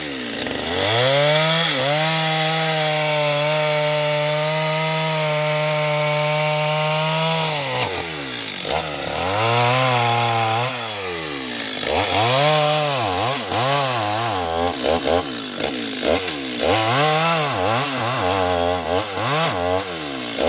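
Two-stroke chainsaw revved up and held at a high steady speed for about six seconds. It then drops back and is revved up and down again and again as it cuts into a felled mahogany trunk.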